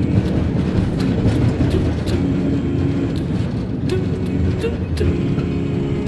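Gondola cable car cabin riding on its haul rope: a steady low rumble with frequent clicks and rattles from the cabin.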